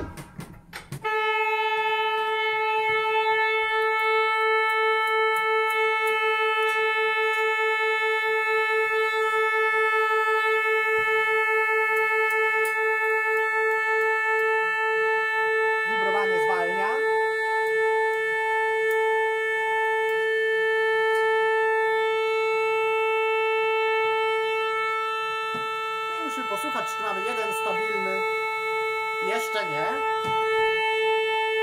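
Pipe organ holding one note on a reed pipe sounded together with the 8-foot Principal while the reed is being tuned at its tuning wire. At first the note wavers with beats that slow and fade as the two pipes come into tune, then it holds steady. Brief sliding pitch sweeps come about halfway through and again near the end as the wire is moved.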